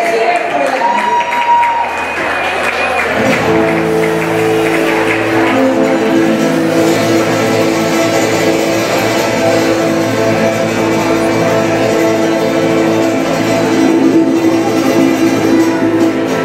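A live band starts playing about three seconds in: guitars over steady held chords.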